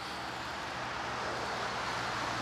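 Steady background rumble of vehicle noise.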